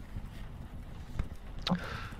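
Pen writing on paper, faint scratching strokes over a steady low rumble of background noise.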